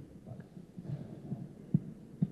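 Faint, irregular low thumps of handling noise on a handheld microphone held close to the mouth, with one sharper knock near the end.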